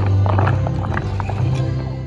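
Wooden shoes clomping on pavement in a quick, irregular clatter of knocks, with music and a low held tone underneath. It fades out just after the end.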